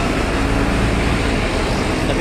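Steady rumble of road traffic.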